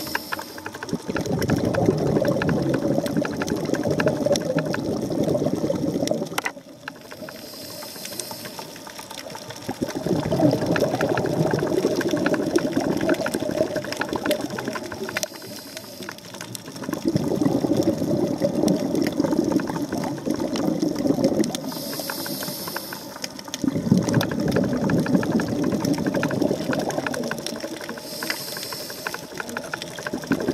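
Scuba diver breathing through a demand regulator, heard underwater: a short high hiss on each inhale, then several seconds of bubbling exhaust on each exhale, about four breaths in a slow, even cycle.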